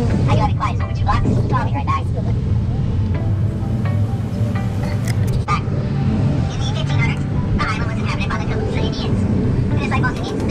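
Steady low engine rumble and road noise of the Conch Train tour tram, heard from an open passenger car while it drives, with indistinct voices over it at the start and near the end.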